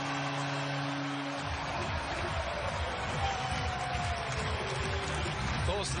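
Arena crowd cheering after a goal, with a low, steady horn-like chord that cuts off about a second and a half in, followed by loud arena music with a beat under the crowd noise.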